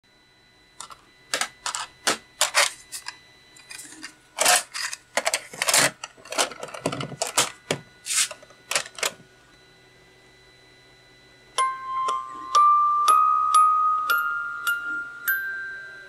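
Clicks and knocks as a Tomy Bring Along a Song wind-up music box is handled and its play buttons are pressed. After a short pause, the music box plays about eight plucked, ringing notes that step upward one after another: the ascending-scale side of a 3D-printed test tape.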